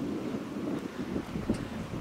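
Wind buffeting the microphone: an uneven, low-pitched noise.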